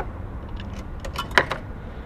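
Coins clinking and dropping into a car-wash coin machine: a few short metallic clicks, the loudest about one and a half seconds in, over a low steady hum.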